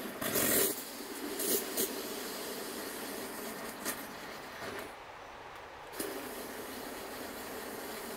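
Water from a garden hose nozzle running into a plastic 2-litre pump sprayer bottle as it fills: a steady hiss of flowing water, easing briefly about five seconds in.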